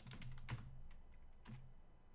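Quiet computer keyboard typing: a quick run of keystrokes, then one more keystroke about a second and a half in.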